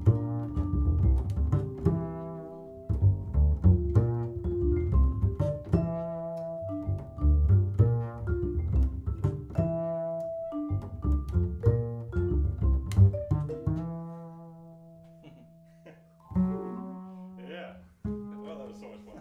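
Jazz duo of plucked double bass and Musser vibraphone played with mallets. The phrases thin out about fourteen seconds in into long ringing tones, and a last low note is struck near the end and left to ring as the tune closes.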